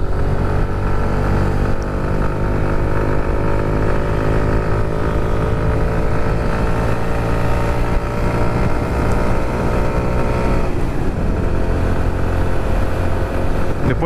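Honda Pop 110i's small single-cylinder four-stroke engine running under way. Its note climbs slowly for about ten seconds, then drops near the end, over a steady low wind rumble on the microphone.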